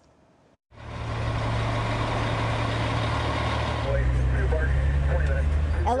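Fire engine's diesel engine and road noise heard from inside the cab while driving, starting about a second in, steady, with the engine note changing and growing deeper about four seconds in.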